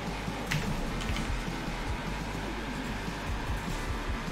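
Quiet background music playing steadily, with a few sharp keyboard or mouse clicks, about half a second and a second in, as an expiry date is typed into a web form and submitted.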